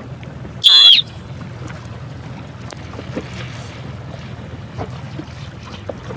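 Steady low hum of a motorboat running slowly, with wind on the microphone and water noise. About a second in, one short, loud, shrill cry cuts through.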